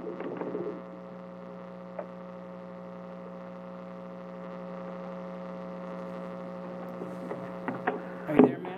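Steady electrical hum, a low buzz with a fainter higher tone over it, from an open remote audio line on which the called-on caller does not answer. A few faint clicks come through near the start and about two seconds in.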